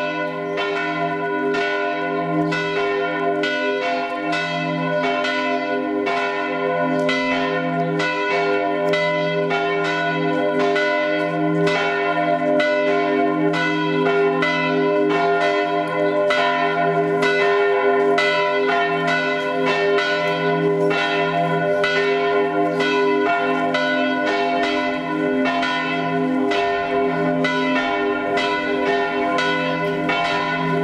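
Church bells ringing continuously in a fast, steady peal, about three strikes a second, with the tones ringing on and overlapping.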